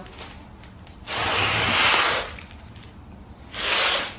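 Heavy electric golf cart motors shifted on their cardboard sheets on a concrete floor, giving two scraping swishes: one of about a second, then a shorter one near the end.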